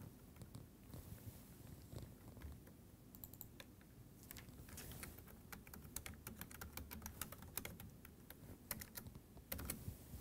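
Faint typing on a computer keyboard: quick, irregular key clicks, coming thickest from about three seconds in until near the end.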